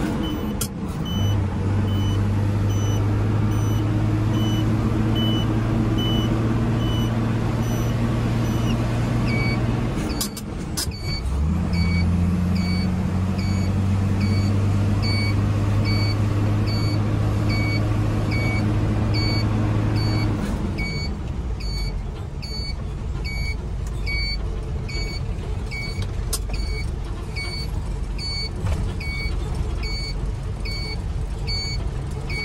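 Light truck's engine heard from inside the cab while driving, a steady drone that breaks off and picks up again at about ten seconds in, then eases off around twenty seconds in. A short electronic beep repeats about once a second throughout.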